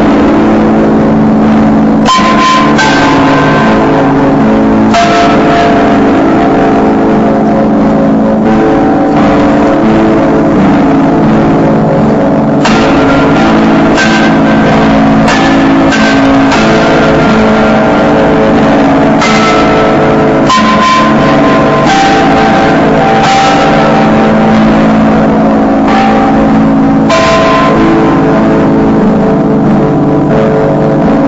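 Music: a sustained low drone with bell- or gong-like notes struck at irregular intervals, each ringing on.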